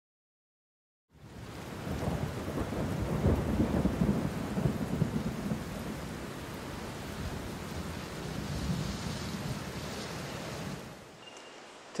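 A storm-like rumble over a steady rain-like hiss. It starts after about a second of silence, swells in the first few seconds, then settles and fades out near the end.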